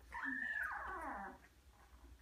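A newborn English Labrador puppy gives one high, whimpering cry about a second long that falls in pitch, while it is held and handled in a stress-training position.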